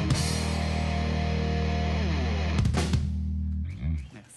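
Live rock band ending a song: a crash at the start, then electric guitars and bass holding a final chord, with one guitar line sliding down in pitch about two seconds in. A few last drum hits come just before three seconds, and the band stops shortly before the end.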